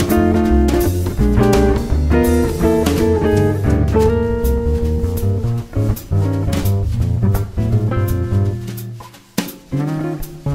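Jazz trio playing a bop tune: quick melodic lines over a moving bass line and drum kit with cymbals. The music thins out briefly about nine seconds in, then picks up again.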